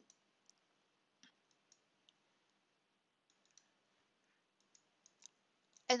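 Faint, irregular clicks of a computer mouse, about a dozen, short and scattered, with quiet between them.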